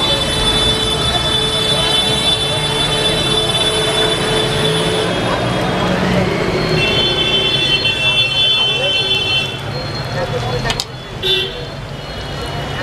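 Battered fritters sizzling in a kadai of hot oil, under busy street noise: vehicle horns, one held for a couple of seconds in the middle, and voices. Near the end there is a sharp click and the sound drops a little.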